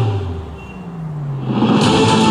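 A racing motorcycle's engine sweeping past twice, its note falling in pitch each time, with music coming back in near the end.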